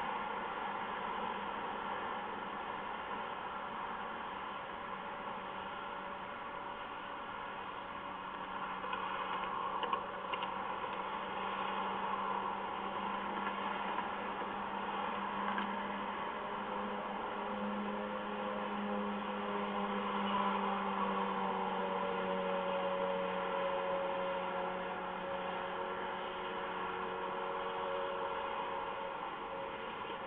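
Steady hiss with a low hum. About halfway through, a faint droning tone comes in and drifts slowly in pitch.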